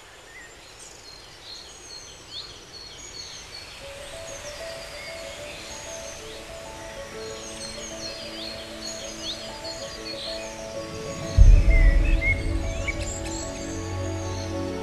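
Birds chirping and calling over a soft hiss while gentle music swells in underneath. About three-quarters of the way in, a deep boom hits, the loudest moment, and the music carries on.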